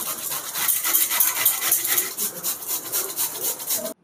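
Raw beetroot being grated on a metal hand grater: a rasping scrape repeated in quick, even strokes, about four a second, that stops abruptly near the end.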